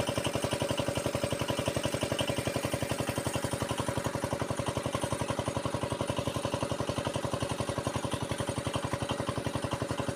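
An irrigation pump's engine running steadily at an even speed, with a fast regular beat and a steady hum over it.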